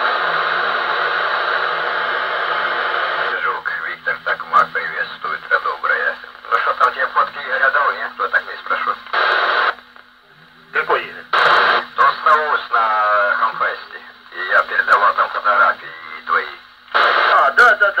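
Loudspeaker of a 2 m FM amateur transceiver. It starts with about three seconds of squelch hiss, then brings in noisy, thin-sounding voices of distant stations, broken by short bursts of hiss as transmissions open and close. These are weak signals over a tropospheric (tropo) VHF opening, with a faint low hum underneath.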